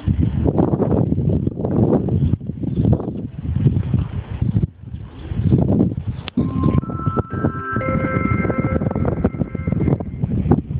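Wind rumbles in gusts on the microphone. About six and a half seconds in, a chime of several held tones at different pitches plays over the station platform loudspeaker, the approach signal for an incoming train.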